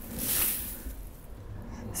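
Rustling of rice leaves and stems as a whole rice plant is pulled out of its bed, loudest in the first half second and then fading.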